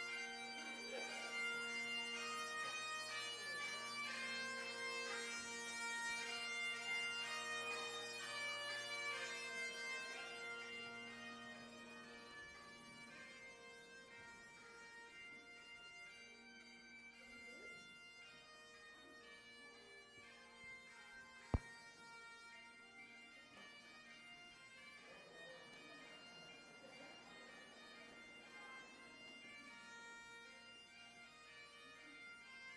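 Highland bagpipes playing a tune, the steady drones sounding under the chanter melody. About a third of the way in the pipes fade as the piper walks out, and they carry on more faintly. A single sharp click about two-thirds of the way through.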